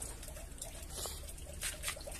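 Faint rustling and a few soft crackles from clumps of Monte Carlo aquatic plant being handled, over a low steady background rumble.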